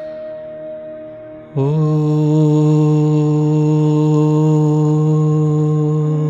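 Soft meditative background music, then about one and a half seconds in a deep male voice begins one long chanted note. The note scoops briefly into pitch and then holds steady and loud over the music.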